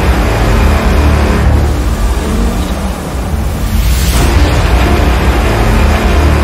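Cinematic logo-intro music and sound design: a loud, deep bass rumble with whooshing noise, swelling to a bright whoosh about four seconds in.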